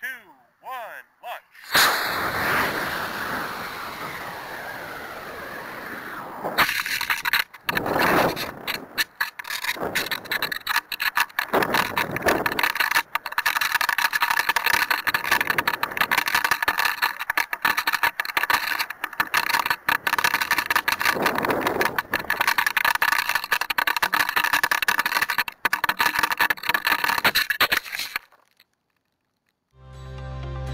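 Model rocket's onboard camera audio: an F44 motor lights about two seconds in with a sudden rushing burn and a falling whistle. About six and a half seconds in a sharp jolt is followed by choppy wind buffeting the microphone through the descent, which cuts off abruptly near the end.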